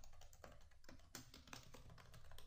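Faint keystrokes on a computer keyboard in a quick, irregular run, someone typing a word.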